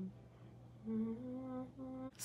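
A woman humming softly to herself: a held, slightly wavering note starting about a second in, then a short note near the end.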